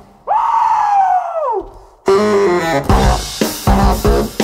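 Baritone saxophone alone plays a high note that bends up and then falls away in a long downward slide, followed by a brief silence. About halfway through, the drum kit and sax come back in together with a punchy riff.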